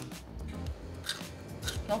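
A bite into a raw celery stalk, then crisp, irregular crunching as it is chewed.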